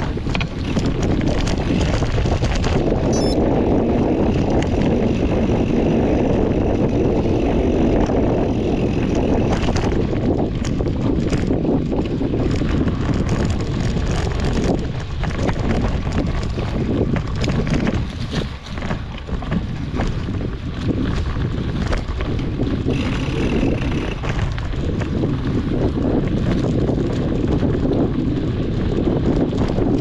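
Wind buffeting an action camera's microphone on a mountain bike ride, over the steady rumble of knobby tyres rolling on a dirt and leaf-covered trail, with frequent short clicks and knocks from the bike over roots and bumps.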